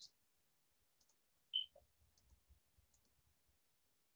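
Near silence with a few faint computer mouse clicks, one slightly louder about a second and a half in.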